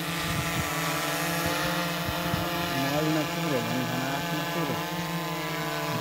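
Quadcopter drone hovering overhead, its motors and propellers giving a steady, many-toned hum.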